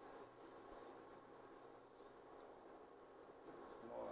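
Faint sizzling of saltfish fritter batter frying in hot cannabis-infused oil in a pan.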